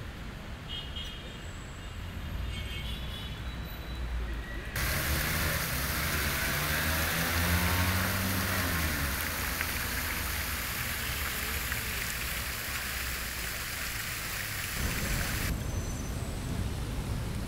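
Low outdoor rumble of distant traffic, then about five seconds in a fountain's cascading water starts splashing steadily. The splashing stops abruptly shortly before the end.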